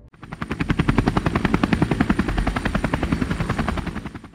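Helicopter running: a rapid, even chop of rotor blades over a thin, steady high whine. It starts suddenly and fades near the end.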